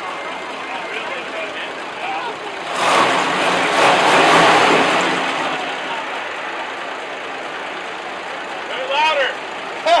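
A car engine running amid people talking, swelling louder for about two seconds starting about three seconds in; a short laugh near the end.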